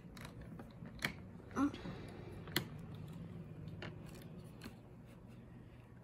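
Plastic marble-run track pieces clicking and rattling as they are pushed together by hand, with a sharp plastic click about two and a half seconds in.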